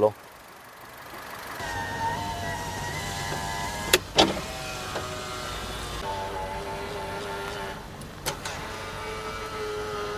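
Honda Amaze petrol engine running smoothly just after a major service with fresh engine oil. It steps up about one and a half seconds in, then holds a steady hum. Two sharp clicks come through, one about four seconds in and one about eight seconds in.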